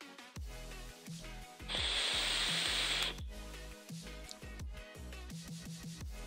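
A puff on a vape dripper atomizer: a loud airy hiss of air and vapour for about a second and a half, starting about two seconds in. Quiet background music plays underneath.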